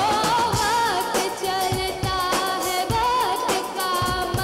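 A young woman singing a melodic Indian film-style song through a microphone, her voice wavering with ornaments, backed by a live band whose drum kit keeps a steady beat.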